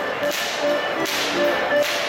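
Goaßl whips being cracked by Schuhplattler whip-crackers: sharp cracks in a steady rhythm, about four in two seconds, over music.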